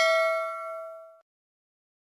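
A single bell ding sound effect from a notification-bell click, ringing out and fading away a little over a second in.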